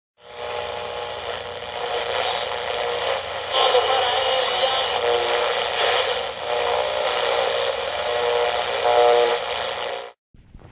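Radio sound with a narrow, old-broadcast tone: hiss with several steady tones drifting in level. It starts just after the beginning and cuts off suddenly at the end.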